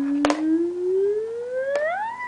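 A young child's voice holding one long hummed note that slides slowly upward in pitch and climbs faster near the end. Two faint clicks sound over it, one a quarter second in and one near the end.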